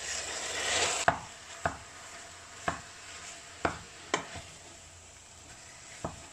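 Minced pork and beef going into a pot of frying onion and garlic: a rush of sizzling in the first second, then a wooden spoon stirring the meat and knocking against the pot about five times over a quieter sizzle.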